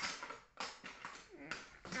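A child talking quietly, half under the breath, with short rustling noises between the words.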